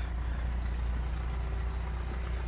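Volkswagen Jetta's engine idling: a steady low hum.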